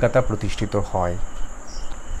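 A man's voice speaking for about the first second, then a pause with a steady background hiss and a faint, steady high-pitched whine.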